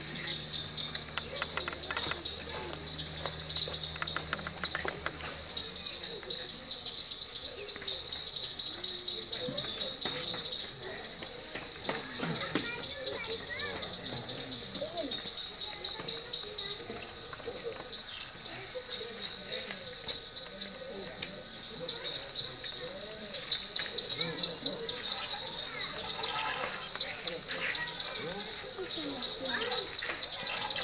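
Crickets chirping steadily in a high, pulsing trill, with low murmured voices underneath and a run of sharp clicks about three-quarters of the way through.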